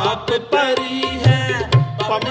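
Sikh kirtan music: harmoniums holding steady chords under a sung melody, with tabla strokes and the low bayan drum sliding in pitch.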